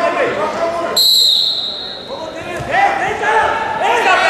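A referee's whistle gives one sharp, high, steady blast about a second in and rings on briefly in the large hall, restarting the wrestling bout. Voices shout around it, loudest in the second half.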